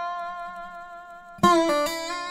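A Weissenborn hollow-neck lap slide guitar played with a metal bar and finger picks. One plucked note rings with long sustain and fades slowly, then about one and a half seconds in a new note is plucked and the bar slides its pitch down in small steps, giving the microtonal slide sound.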